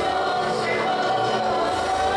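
Children's choir singing a hymn together, holding long steady notes.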